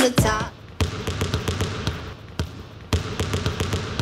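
A pop song's last sung word cuts off about half a second in. After it comes a run of sharp, irregular knocks and thumps over a low background murmur.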